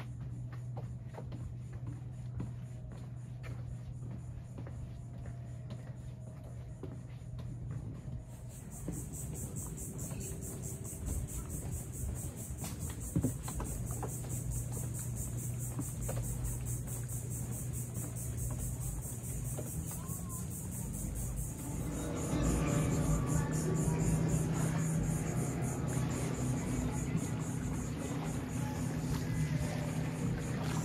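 Insects buzzing in a high, finely pulsing drone that starts about a quarter of the way in, over a steady low hum. About two thirds of the way in, a louder, lower sound with several steady tones joins in.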